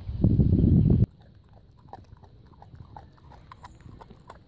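A loud low rumble of wind on the microphone for about a second, cut off abruptly; then a dog gnawing a raw kid goat carcass, a run of small sharp crunches and clicks of teeth on meat and bone.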